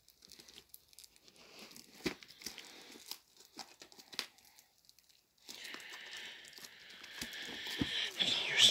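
Fingers picking and crinkling at the plastic shrink-wrap on a DVD case, trying to tear it open by hand: scattered small crackles, then a steadier plastic rustle from about five seconds in.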